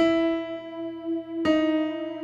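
Electronic keyboard with a piano sound playing two single melody notes slowly, E then D♯. The second is struck about a second and a half in, and each rings on.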